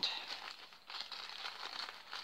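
A small plastic bag of sand crinkling as it is picked up and handled, an irregular rustle throughout.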